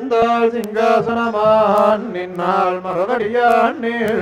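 A voice chanting Sanskrit devotional verses in a continuous recitation, held mostly on one level pitch with short glides between phrases.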